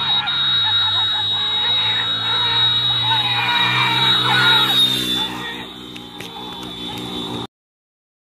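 A crowd shouting and yelling over a steady low drone and a constant high whine. The noise falls away about five and a half seconds in and cuts off abruptly shortly before the end.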